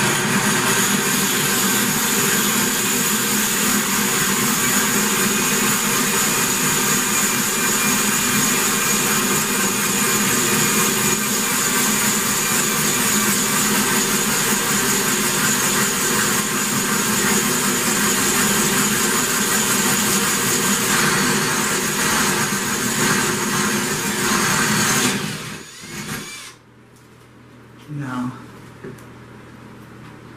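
Cordless drill running steadily at speed, boring a larger bit through very hard ceramic wall tile to enlarge a hole. It runs for about 25 seconds, then stops abruptly.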